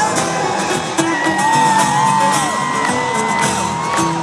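Live stadium concert music through the PA, heard from within the crowd: an instrumental break with strummed guitar and beat. A long high voice note is held over it from about a second in until near the end.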